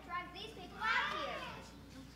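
Children's voices: a child speaks and calls out loudly about a second in, with other young voices around it, then it fades.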